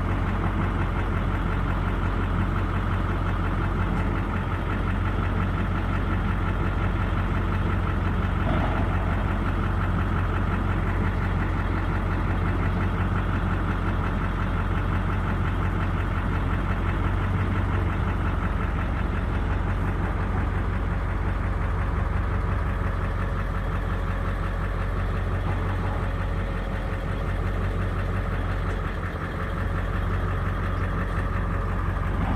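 Vehicle engine idling steadily, a constant low hum.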